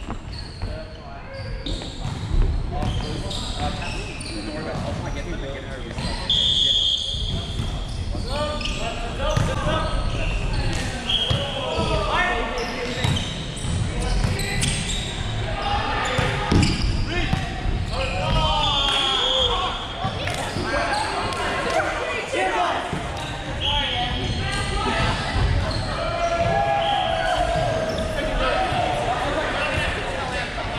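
Indoor volleyball rally: the ball knocked and bouncing on the hardwood court, mixed with players calling out, all echoing in a large hall. Several short high squeaks come and go through it.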